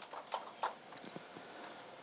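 Quiet room tone with a few faint, irregular clicks, most of them in the first second.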